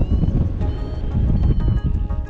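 Wind buffeting the camera microphone in paragliding flight, a loud rough rumble that starts suddenly, with a few short high-pitched beeps over it.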